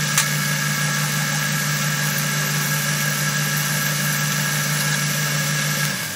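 Metal lathe running steadily with a constant hum while a parting tool cuts off a small piece of round stock.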